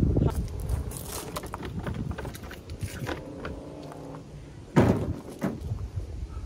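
Scattered knocks and clicks, with one loud thump about five seconds in and a smaller one just after.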